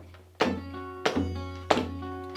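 Acoustic guitar played in a steady beat, a sharp percussive hit about every two-thirds of a second; from about half a second in, each stroke rings on as a full strummed chord.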